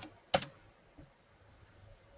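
Computer keyboard keystrokes entering a stock ticker: two sharp key clicks in the first half second and a faint one about a second in.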